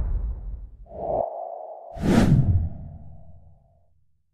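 Edited title sound effects: a whoosh dies away, then a steady mid-pitched tone comes in about a second in, a second swish sweeps through at about two seconds, and the tone fades out near the end.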